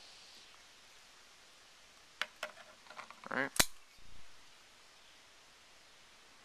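Kershaw Half Ton folding knife being handled: a few light clicks about two seconds in, then one sharp click as the blade swings open and the liner lock snaps into place, followed by a duller knock.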